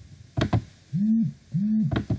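A couple of computer keyboard clicks, then a person humming two short notes, each rising and then falling in pitch.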